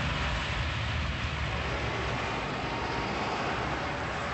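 Steady motor vehicle noise: an engine running, with a low rumble under a broad, even hiss.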